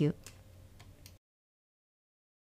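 A woman's voice finishes the word "you" of "thank you", followed by faint room tone with a few faint ticks, and the audio then cuts to dead silence just over a second in.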